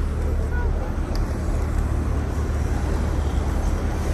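Busy city street ambience: steady road traffic noise with a constant low rumble, and faint voices of passers-by.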